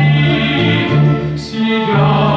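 Brass band playing a slow song in waltz time, with a male tenor voice over it; the sound dips briefly about one and a half seconds in.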